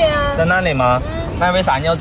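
Mandarin conversation between a woman and a man, with a drawn-out, high-pitched voiced sound at the start.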